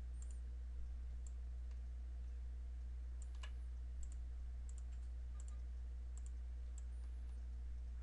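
A handful of faint, scattered computer mouse clicks over a steady low hum.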